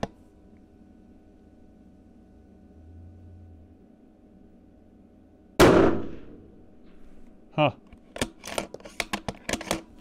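A single shot from a 6 BRA precision rifle with a muzzle brake, sudden and loud, about halfway through, its blast dying away over about half a second. A run of sharp clicks follows near the end.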